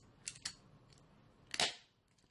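A hand staple gun fires once about one and a half seconds in, a single sharp snap, driving a staple through fabric. A couple of light clicks of handling come before it.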